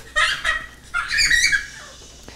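Two short, high-pitched squealing vocal sounds, the second longer and rising, like a young child's voice.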